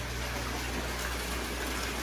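Steady rushing of circulating aquarium water and air bubbles in a fish room full of running tanks, over a steady low hum.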